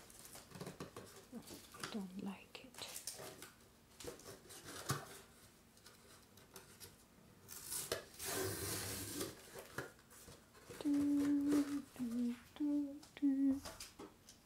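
A cardboard shipping box being folded and closed by hand: rustling and scraping of cardboard in irregular bursts, the loudest a little past the middle. Near the end a voice hums four short held notes at changing pitch.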